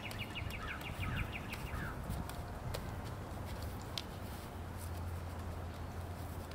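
A bird trilling, a rapid run of short high notes with a few falling chirps, which ends about two seconds in. A few sharp clicks follow, and a low steady hum comes in near the end.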